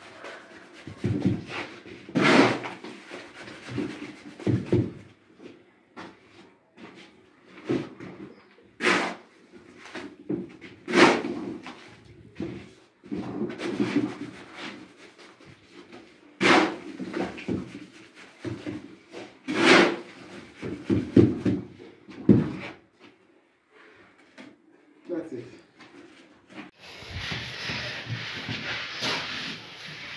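A steel shovel scraping and striking a plywood mixing board as wet sand-and-cement render is turned by hand, in irregular strokes every second or two. A few seconds before the end a denser, steadier scraping takes over.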